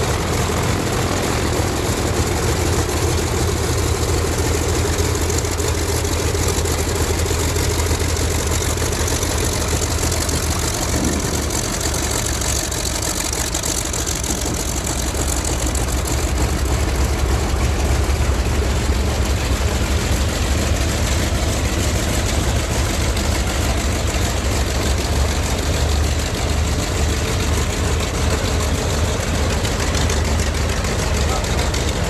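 Vought F4U Corsair's Pratt & Whitney R-2800 radial engine running at low power while the plane taxis, a steady low rumble with propeller noise.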